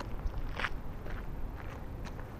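Footsteps crunching on gravel, a few steps about half a second apart, over a low rumble of wind on the microphone.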